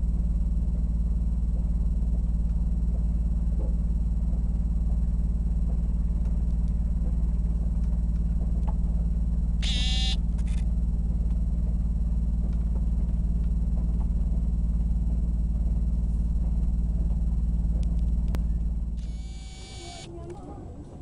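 Steady low running noise of a moving passenger train heard from inside the carriage. About halfway through there is a brief high-pitched squeal. Near the end the noise drops off.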